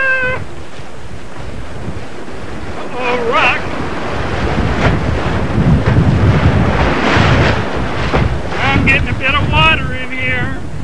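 Whitewater rushing and splashing past a canoe's bow, with wind buffeting the microphone. A person's short high-pitched shouts come through about three seconds in and again near the end.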